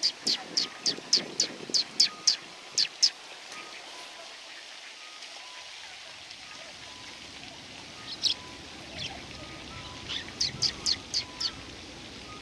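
Eurasian tree sparrow chirping: a rapid run of short, sharp calls for the first three seconds, a few more around eight seconds in, and another quick run near the end.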